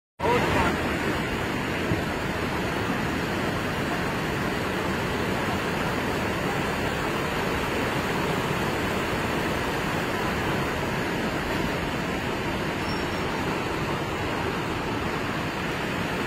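A river in full flood: muddy floodwater rushing past in one steady, unbroken noise.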